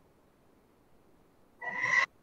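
Near silence, then near the end a short vocal sound, under half a second long, from a student's voice coming through the video call.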